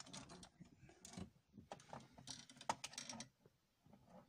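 Faint, irregular clicks and knocks of hands handling hard plastic, the toy figure and lighting gear being moved about, thickest about two to three seconds in.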